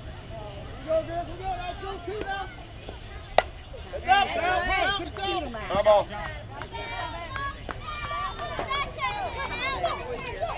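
Players and spectators shouting and cheering with no clear words. A single sharp crack comes about three and a half seconds in, and the yelling turns louder and more excited just after it.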